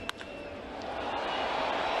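A single sharp crack of a bat striking a baseball right at the start, then ballpark crowd noise swelling steadily as the ball carries deep to the outfield.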